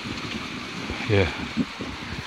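Steady rushing splash of a small waterfall, a thin stream of water running down a rock face.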